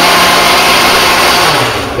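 Countertop blender running at speed, pureeing hot mushroom soup under a towel-covered lid. Near the end the motor is switched off and winds down, its hum dropping in pitch.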